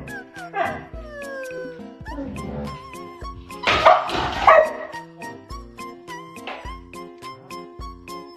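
Background music with a steady beat, and halfway through a dog barks twice, loudly, as it rears up at the man in front of it.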